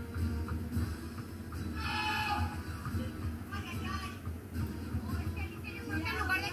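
Television broadcast audio: low background music with brief, faint voices.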